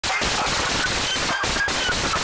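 Rapid police handgun fire from several officers shooting at once, heard through a body camera's microphone: a loud, continuous barrage in which the shots run together.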